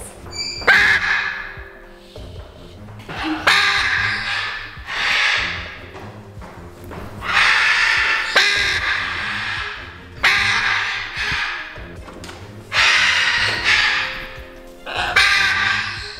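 Hyacinth macaw squawking, a series of loud harsh calls every few seconds, each a second or two long, over background music.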